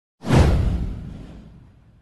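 A cinematic whoosh sound effect for a title animation: a sudden swoosh with a deep low boom that sweeps downward and fades away over about a second and a half.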